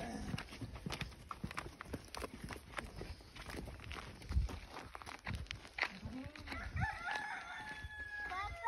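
Footsteps and knocks on dry dirt ground. Near the end a rooster crows, one long stepped call.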